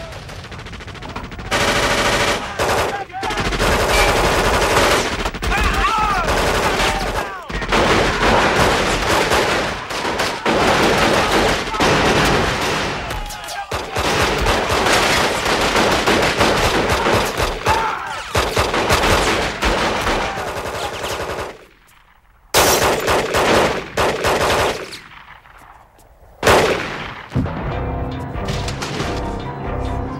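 Film gunfire: long stretches of rapid shots beginning about a second and a half in and running for some twenty seconds with brief breaks, then a short pause and two more loud bursts near the end.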